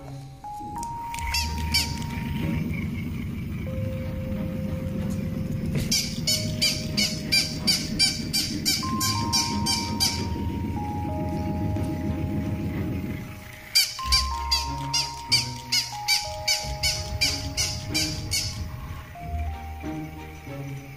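Light background music with a simple stepping melody, over a battery-powered walking plush toy dog: its motor buzzes as it walks, and twice it gives a run of quick, high, squeaky electronic yaps, about four a second, each run lasting a few seconds.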